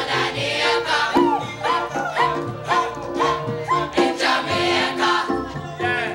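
A choir of voices singing together on stage with a steady pulse of about two beats a second.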